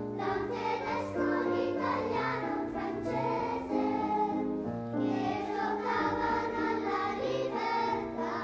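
Children's choir singing a song, accompanied by a grand piano.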